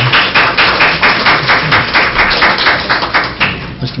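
A small audience applauding, a quick steady run of claps that stops about three and a half seconds in.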